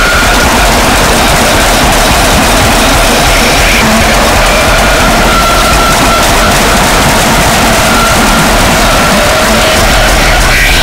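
Harsh noise and power electronics: a loud, dense, unbroken wall of distorted noise, with a few faint thin tones drifting through it.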